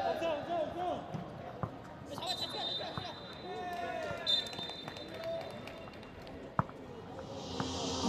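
A basketball bouncing and thudding on an outdoor court during play, amid players' shouts, with one sharp loud thump about two-thirds of the way in. A thin steady high tone sounds for a few seconds in the middle.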